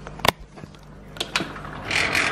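A sliding security screen door being unlatched and opened: a sharp click about a quarter second in, a couple of lighter clicks, then a rush of sliding noise near the end.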